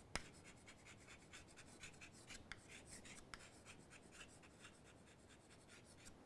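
Chalk writing on a chalkboard: a faint, rapid string of small taps and scratches as the chalk forms a line of words.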